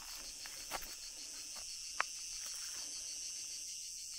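Steady, high-pitched chirring of insects, with a sharp click about halfway through.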